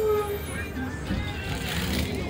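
Steady low rumble of a moving city bus heard from inside, with music playing over it.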